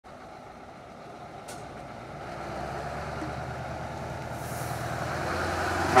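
Scania 144L 530 T-cab's V8 diesel engine pulling away at low revs, getting steadily louder as the truck comes closer. A loud horn starts just at the end.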